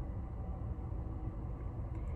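Steady low rumble of a car heard from inside the cabin, with a faint even hiss above it.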